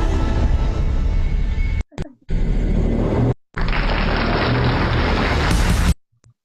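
Loud intro-video music with a heavy bass line. It drops out twice for a moment and cuts off abruptly just before the end.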